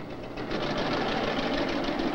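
Punched-card reader punch of an IBM 1440 system running, a fast, even mechanical clatter that grows louder about half a second in, as it feeds and reads a new deck of program cards to load a different program into the processor.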